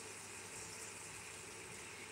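Faint, steady sizzle of a chicken breast and butter frying in a non-stick pan.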